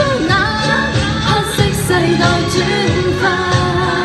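A woman singing a Cantonese pop song live through a handheld microphone, with amplified accompaniment carrying a steady beat.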